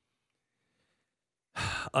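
Near silence for about a second and a half, then a man's breathy sigh that runs straight into his next words.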